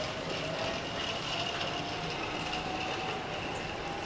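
Hankyu 5100 series electric train pulling away down the line, its motor whine rising slowly in pitch as it gathers speed, over a steady rolling rumble.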